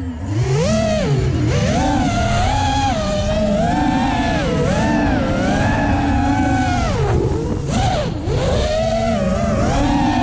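Racing drone's brushless motors whining, the pitch rising and falling constantly with throttle changes, with brief drops in pitch at the start and again about seven to eight seconds in.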